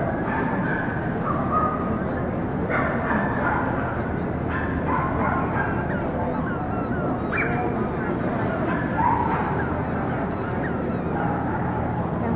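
Dogs barking and yipping in short calls over a steady crowd hubbub.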